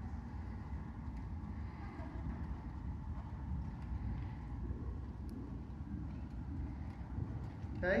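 A steady low rumble, with the soft, muffled hoofbeats of a horse cantering on an arena's sand surface.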